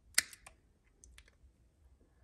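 Wire strippers snipping and clicking on the thin wires of a bed motor cord: one sharp snip about a fifth of a second in, then a few lighter clicks.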